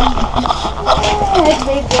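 Footsteps of several people walking through grass, with a low rumble of wind on the microphone and voices calling now and then.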